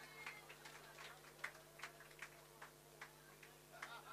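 Near silence: a low steady hum of room tone with faint, irregular little ticks and clicks scattered through it, the clearest about a second and a half in.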